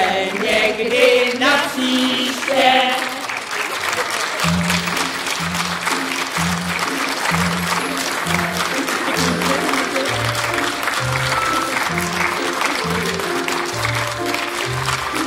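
Audience applause running through the whole stretch, over the last few seconds of the cast singing; about four seconds in, music with a steady bass line of repeated notes starts and carries on under the clapping.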